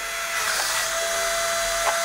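Suction fan of a remote-control wall-climbing toy car running steadily, a high whine over a hiss of rushing air, holding the car against the wall.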